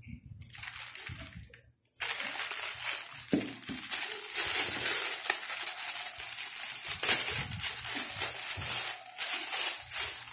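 Clear plastic packaging bag crinkling as it is handled and opened: a few soft rustles, then loud continuous crackling from about two seconds in.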